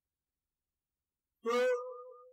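Dead silence for about a second and a half, then a man's voice drawing out one word in a long, slightly rising tone.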